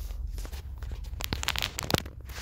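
Scattered small clicks and crackles close to the microphone, growing denser about a second in, with one sharper click near the end, over a low steady hum.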